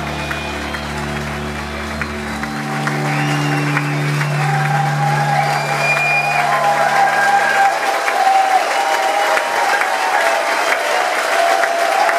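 A rock band's final held low chord rings out and fades away over the first several seconds while a club audience applauds and cheers, the applause and cheering growing louder as the chord dies.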